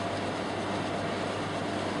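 Steady room tone: an even background hiss with a low, constant hum, with no distinct sounds standing out.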